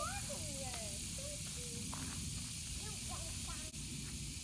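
Outdoor ambience: a steady high hiss over a low rumble, with faint voices talking in the background during the first couple of seconds.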